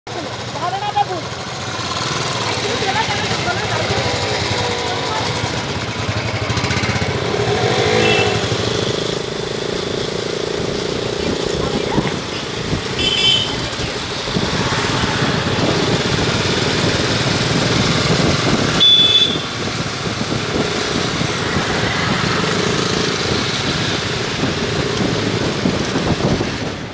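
A group of motorcycles riding past together, engines running with some revving, with voices mixed in.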